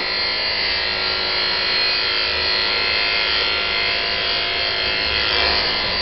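Electric dog clippers with a 9 mm comb attachment running with a steady hum as they cut through a thick, curly coat.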